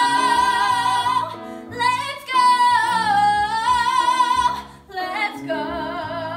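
Two female singers performing a musical-theatre duet, holding long notes with vibrato over instrumental accompaniment. The voices break off briefly about four and a half seconds in, then carry on singing.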